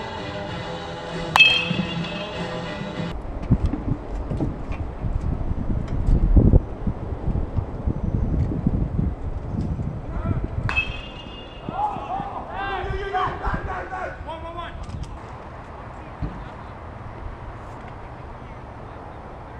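A baseball bat strikes a ball twice, about a second in and again about ten seconds in, each hit sharp with a short ringing ping. Between the hits there is a low rumbling noise. After the second hit, voices call out for a few seconds.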